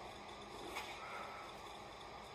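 Quiet room tone, a faint steady hiss, with one soft brush of movement a little under a second in.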